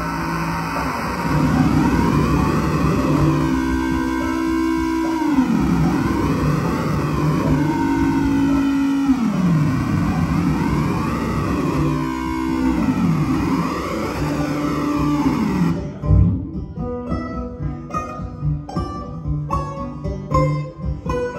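Live banjo music: a dense, swirling wash with pitch sweeps that fall and rise again about every four seconds. About sixteen seconds in the wash cuts off suddenly, and clean single plucked banjo notes follow.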